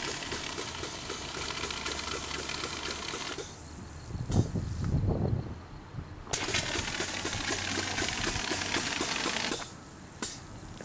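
Compressed-air-foam backpack unit discharging pepper-spray foam from its nozzle: a crackling, spitting hiss in two bursts, the first lasting about three seconds and the second starting a few seconds later and running about three seconds. Between the bursts there is a low rumble.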